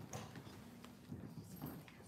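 Quiet hall with scattered small knocks and shuffling sounds from a seated audience, over a faint low murmur.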